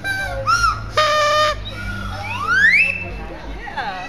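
Comic sound effects: a short hoot, then a held buzzy note, then a whistle sliding steadily up in pitch and holding briefly at the top, with short falling glides near the end.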